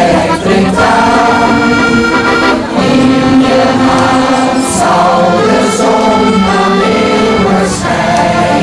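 An amateur social choir singing a held, sustained passage in several voices, with brief breaths between phrases.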